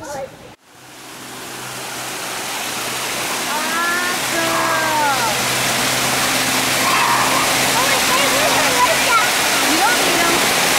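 Fountain water pouring from many spouts into a shallow pool, a steady rushing splash that starts about half a second in and swells up over the next few seconds, then holds even. Faint voices are heard over it.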